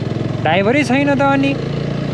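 Motorcycle engine running steadily, with a person's voice over it for about a second.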